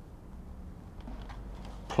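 Faint clicks and rustles of thin wire leads being handled and twisted together by hand, over a low steady hum.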